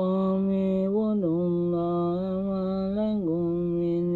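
A man reciting the Quran in Arabic in a slow melodic chant, holding long notes that step up and down in pitch, with short breaks between phrases.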